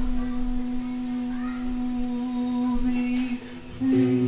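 A live band holding one steady sustained note, with faint overtones above it, between sung lines. The note fades a little over three seconds in, and the full band's chord comes in just before the end.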